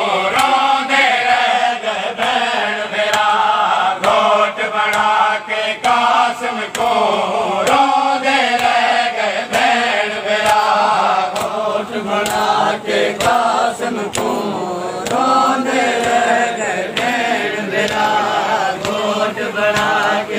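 A group of men chanting a Shia noha (Muharram mourning lament) together, with a steady beat of sharp chest-beating slaps (matam) roughly once a second keeping time.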